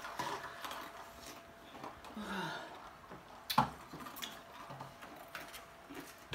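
Small knocks and clicks of red plastic cups and takeout boxes handled and set down on a wooden table, with one sharp click about three and a half seconds in. A brief low vocal sound just after two seconds in.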